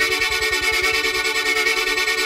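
Xfer Serum software synthesizer playing a held, bright chord on the 'SYN Fluttery' patch, with a fast, even stutter pulsing in its low end. LFO 1 is modulating the multiband compressor's bands, which drives the stutter.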